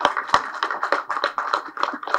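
Audience clapping: many separate hand claps in a quick, uneven patter.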